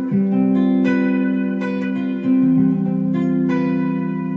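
Clean electric guitar playing a four-note stacked-fourths chord voicing of G, barred at the 10th fret, its notes picked and left to ring, the chord struck again about five times.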